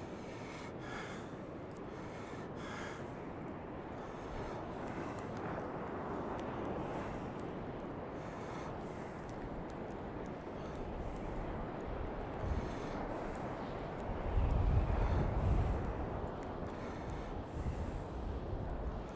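Rough surf breaking on a sand beach: a steady wash of waves from a worsening sea. Gusts of wind rumble on the microphone in the last few seconds.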